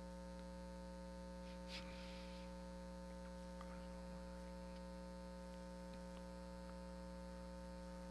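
Steady low electrical mains hum, an even buzz with many overtones, with a faint brief rustle about two seconds in.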